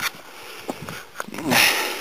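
A man breathing hard, short of breath at altitude. Faint breathing with a few small clicks gives way, about a second and a half in, to a short voiced gasp and a loud, heavy exhale.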